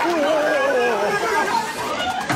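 Several people's voices talking over one another at once, with no clear words.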